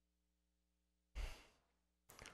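Near silence with a faint steady electrical hum, broken a little over a second in by one short exhale into a microphone.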